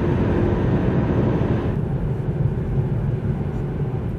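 Road and engine noise inside a moving car's cabin: a steady low rumble with a hiss of tyres over it. The higher hiss drops away a little under two seconds in.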